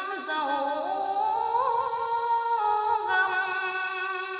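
A singing voice holding long, wavering notes and gliding from one pitch to the next in a slow melody, heard as music over the scene.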